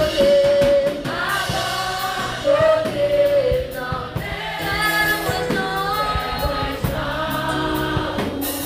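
Girls' choir singing a gospel worship song, led by voices on microphones, over a steady instrumental accompaniment with a regular beat.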